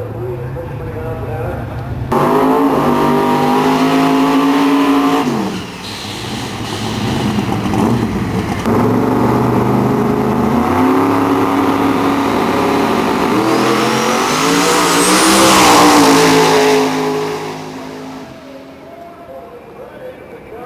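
Outlaw 10.5 drag racing cars running at high revs at the start line, then a launch down the strip with the engine note climbing and a thin rising whistle. The sound peaks and then fades as the car runs away down the track.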